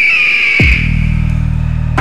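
A pteranodon screech sound effect: one long high cry, falling slightly in pitch and fading out. A deep sustained music drone comes in about halfway through.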